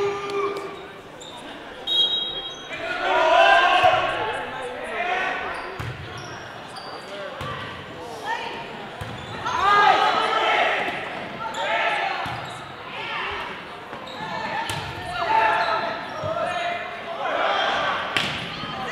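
Volleyball players and spectators calling and shouting in a large gymnasium during a rally, with several sharp smacks of the ball being hit and landing on the hardwood court.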